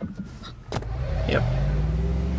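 Car engine running on the soundtrack, a low steady hum that comes in about a second in and grows louder, with a short spoken "Yep" over it.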